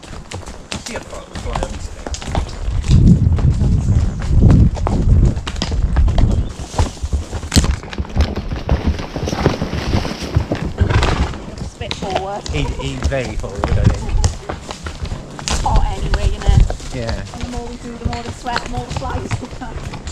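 Horses walking on a hard, dry woodland dirt track, hooves clopping, with a louder low rumble on the microphone about three to six seconds in. Riders' voices talk indistinctly, mostly in the second half.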